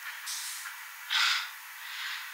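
A woman gasping: a few short, sharp breaths, the loudest about a second in, over a steady hiss.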